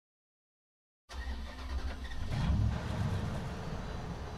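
Silence, then about a second in a deep engine-like rumble starts, swells briefly and settles into a steady drone.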